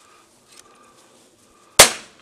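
A single gunshot: one sharp crack near the end that dies away quickly, fired close to a young puppy to get it used to gunfire.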